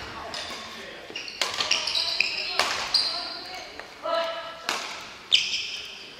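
Badminton rackets striking shuttlecocks: three sharp cracks about a second or more apart, the loudest near the end, echoing in a large hall. Short high squeaks of court shoes on the wooden floor come between the hits.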